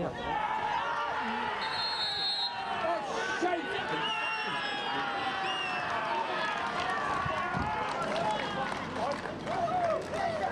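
Overlapping shouts and calls from many men's voices, players and spectators at a football match, carrying on throughout.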